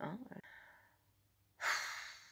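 A woman says a short "hein" and breathes out, then about one and a half seconds in gives a louder breathy sigh that trails off.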